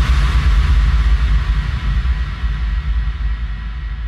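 Closing tail of an electronic breaks track: after the drums stop, a deep bass rumble and a hissing reverb wash ring on and slowly fade out.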